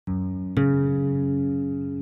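Intro of a rap song: a plucked guitar note, then a louder note or chord struck about half a second in and left ringing, slowly fading.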